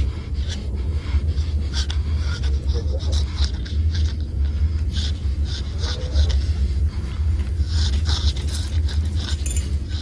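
Film sound effects: a steady deep rumble under scattered short scraping, clicking and hissing noises.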